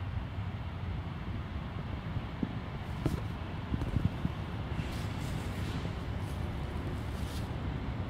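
Steady low outdoor background rumble, with a few faint knocks and rustles in the middle.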